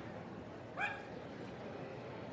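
A small dog gives a single short, high yip a little under a second in, over the steady murmur of a large hall.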